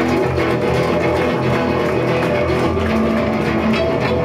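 Live metal band playing loud: distorted electric guitars, bass guitar and drums.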